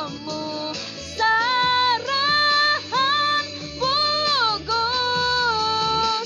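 A teenage girl sings solo, holding long notes with a slight vibrato in several short phrases over a soft backing accompaniment.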